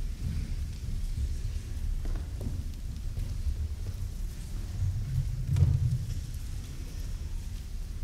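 Low, steady rumble of a large church sanctuary's room sound with a seated congregation, with a few faint knocks. It swells slightly about five and a half seconds in.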